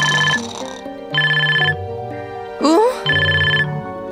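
Cartoon mobile phone ringtone: a trilling electronic ring heard three times, each ring about half a second long and about a second and a half apart, over light background music.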